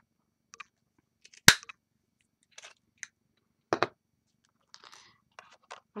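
Small handheld craft punch cutting a star out of gold glitter paper: one sharp snap about a second and a half in, then a second, softer click and light paper rustling.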